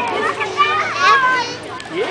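Outdoor crowd chatter: several children's and adults' voices talking and calling over one another, with no single clear speaker.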